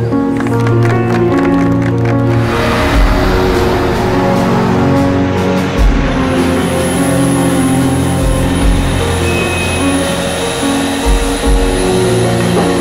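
Film-score background music with long held notes, struck by a few deep booms.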